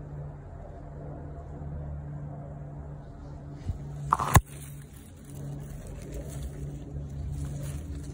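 Radish leaves and stalks rustling and crackling against the microphone as the phone is pushed through them, over a steady low mechanical hum. A sharp snap comes about four seconds in.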